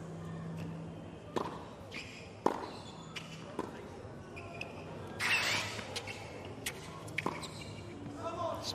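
A tennis ball bouncing on a hard court three times before a serve, then the sharp pops of racquet strikes as the serve and rally are played, over a quiet court. A short burst of noise comes about five seconds in.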